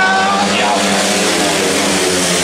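Several grass track racing motorcycles racing past together through a bend, their engines running hard and blending into one steady, loud sound.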